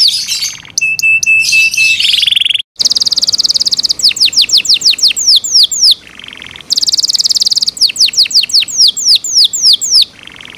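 Yorkshire canary singing: fast runs of high, downward-sliding whistled notes alternating with rapid rolling trills, broken once by a brief sudden gap about a quarter of the way in.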